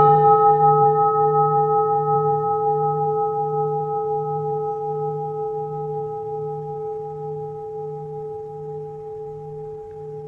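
A Buddhist bowl bell rings out after a single strike, with a low hum that wavers slowly and several higher tones above it, fading gradually across about ten seconds. It marks the close of the chanting and dedication.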